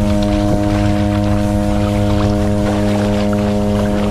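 Water sloshing and splashing against a kayak's bow as it paddles, with a steady low droning tone over it that holds one pitch throughout.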